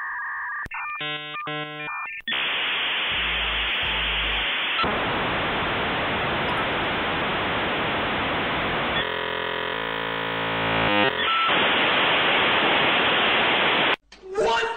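Dial-up modem connecting, heard at telephone-line quality. A couple of seconds of paired dialing tones and beeps give way to a long steady hiss of handshake noise. About nine seconds in, the hiss is broken by a couple of seconds of warbling tones, then it returns.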